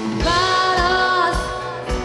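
Live rock band playing with a woman singing one long held note over a steady drum beat.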